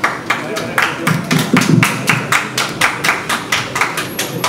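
Hand clapping, a steady run of about four claps a second, with voices talking underneath, strongest between one and two seconds in.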